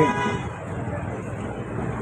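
Steady road-traffic noise, an even hum of passing vehicles, between phrases of an amplified voice.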